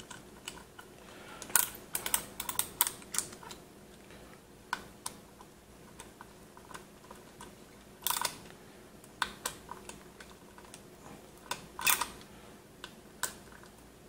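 Hand screwdriver tightening the screws that fix a 3.5-inch hard drive into its drive tray: irregular small clicks and scrapes, bunched in short clusters.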